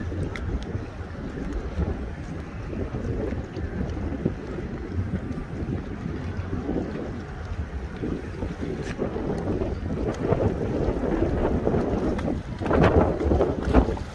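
Several outboard motors idling at low speed as the boat moves off slowly, a steady low rumble, with wind buffeting the microphone.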